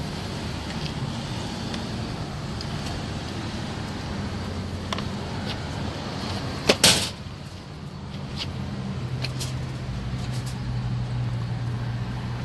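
A motor vehicle engine running steadily close by, with a single sharp clack about seven seconds in.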